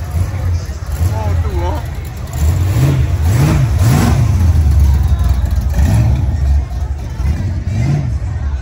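Car engine idling with a low rumble, revved in three quick blips in the middle and once more near the end, from a custom car with an exposed chromed engine.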